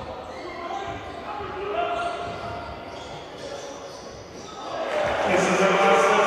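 Live basketball game sound in a sports hall: a ball bouncing on the wooden court and players' and spectators' voices, which grow louder about five seconds in.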